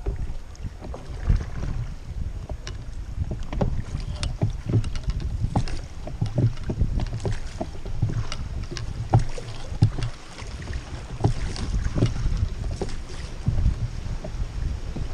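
Water lapping and splashing against an oar-rowed inflatable raft, with irregular small splashes and knocks, over a low rumble of wind on the microphone.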